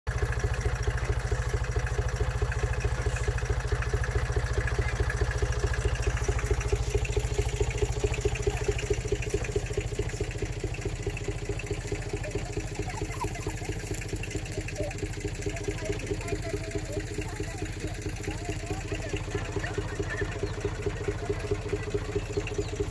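Compact farm tractor's diesel engine running steadily at low speed, with a quick, even firing pulse. It gets a little quieter after the first several seconds.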